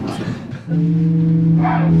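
A single electric guitar note struck about two-thirds of a second in and held steadily, as the players check their tuning; a last trace of laughter comes before it.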